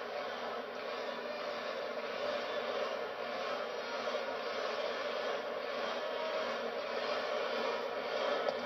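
Steady crowd noise of a baseball stadium crowd, a continuous even hum with no single standout sound.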